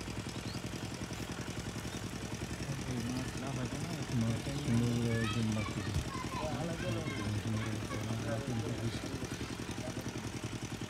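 Small engine-driven water pump running steadily with a fast, even beat, water gushing from its outlet pipe and splashing into a fish net.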